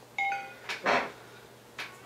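Short two-note computer chime from a Windows PC, the sound it makes when a USB device is removed: the Galaxy S phone has dropped off the USB connection as it reboots after flashing. A couple of brief soft noises follow just before a second in.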